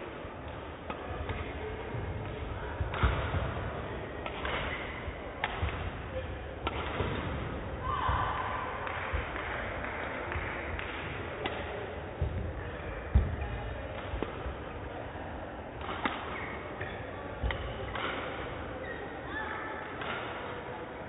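Badminton rally: rackets strike the shuttlecock in a string of sharp cracks about a second apart, with the players' shoes squeaking and thudding on the court mat between shots.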